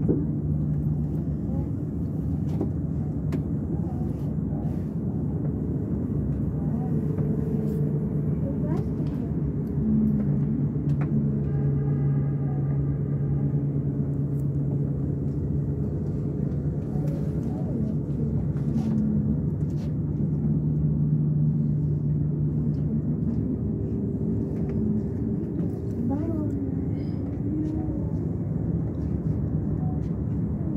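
Steady low hum and rumble of an aerial cable car in motion, heard from inside the cabin.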